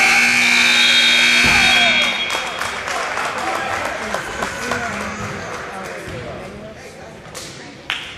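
Gymnasium scoreboard horn sounding one steady, loud blast for about two seconds as the game clock runs out, marking the end of the period. Then the voices of players and spectators in the echoing gym, slowly fading.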